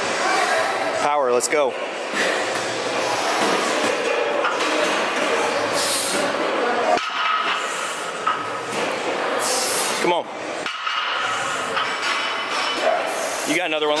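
Busy gym background of voices and music, with a few short metallic clinks from the barbell's iron plates as it is lifted and lowered through a set of deadlifts.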